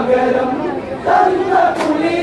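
Men singing an Onamkali song in loud unison chorus, two chanted phrases with a short break about a second in.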